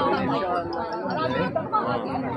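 Chatter of a close-packed group: several voices talking over one another at once.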